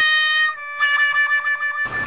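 Comedy sound effect: a steady electronic tone, joined by a lower note about half a second in, both cutting off suddenly near the end.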